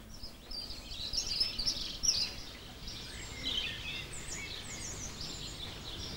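Small birds chirping: many short, high calls overlapping one another over a faint steady hiss.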